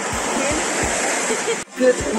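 Small waves washing onto a sandy beach, a steady rush, with low thuds about twice a second from footsteps on the sand. The sound cuts off abruptly near the end.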